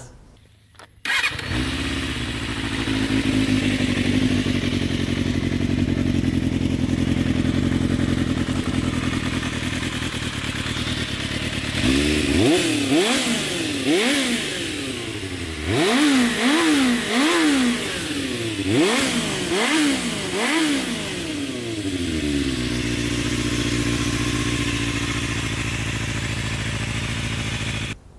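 Suzuki Bandit 250's four-cylinder engine idling, then revved in a series of quick blips between about 12 and 21 seconds in, each rising and falling back, before settling to idle again.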